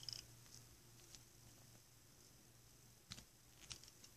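Near silence, with a few faint clicks of a Rubik's cube's layers being turned by hand: one at the start and two more about three seconds in.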